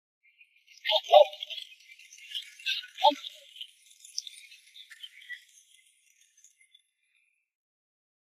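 Audience applause, thin and fading out after about five seconds. Two short tonal sounds rise over it, about a second in and about three seconds in.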